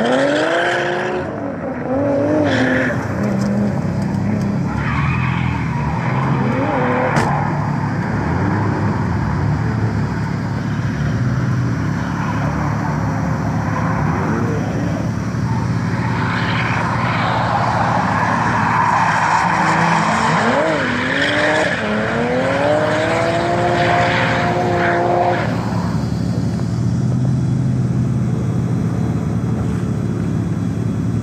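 Drift cars' engines revving hard, with long rising revs about twenty seconds in, over the screech of tyres sliding sideways. Near the end the tyre noise stops, leaving a steady engine hum close by.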